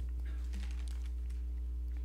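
Steady low electrical hum from the sound system, with faint scattered clicks and rustles of people moving as they get to their feet.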